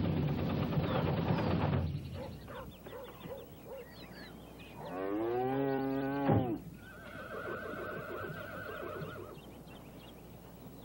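Old pickup truck engine running, then shut off about two seconds in. Then a cow lows loudly about five seconds in, followed by a higher, wavering animal call and a few short chirps.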